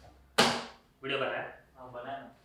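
A sudden sharp sound about half a second in that fades within a moment, followed by two short bursts of people's voices.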